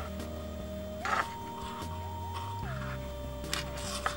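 Background music: a smooth held melody that slides up to a higher note about a second in and back down near three seconds, over a low bass that changes notes, with a few short clicks scattered through.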